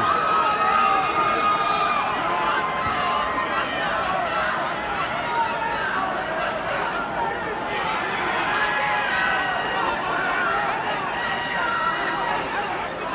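Indoor arena crowd: many voices shouting and talking at once in a steady din, with no single voice standing out.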